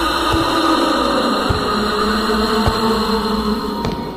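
Slow footsteps, four dull thuds a little over a second apart, laid over a steady low droning music bed.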